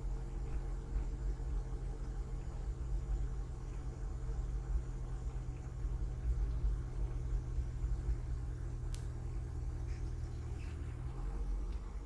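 Car in motion: a steady low engine hum with road rumble. The engine note drops about eleven seconds in.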